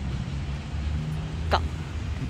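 Low, steady rumble of road vehicles and traffic, with one brief high chirp about one and a half seconds in.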